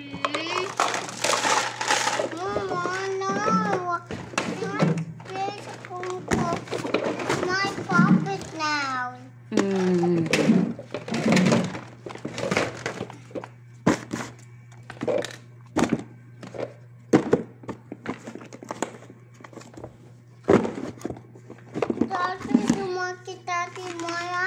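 A young child's voice talking and singing, then a run of sharp clicks and clacks from plastic toys being handled, over a steady low hum.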